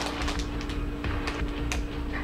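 Crinkling of a clear plastic bag being handled, with scattered small crackles, under a single steady hummed note held at one pitch until speech resumes.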